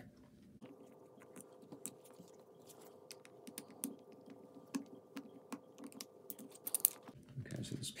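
Quick, light clicks and taps of small plastic parts being handled and worked with a screwdriver as a toy mist generator's plastic water tank is taken apart, over a faint steady hum.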